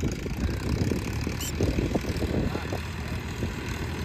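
Farmtrac 60 tractor's diesel engine running steadily, a low pulsing rumble.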